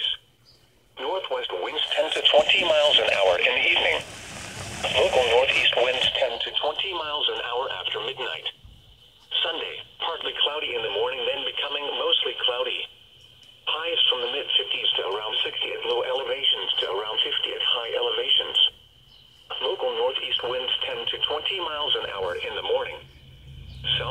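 A weather forecast read over the radio: one voice, thin and band-limited, in phrases broken by short pauses every few seconds.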